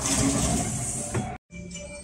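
Background music with a loud rolling rush over it as a sliding window is pushed open along its track; the rush cuts off abruptly about one and a half seconds in, and the music carries on.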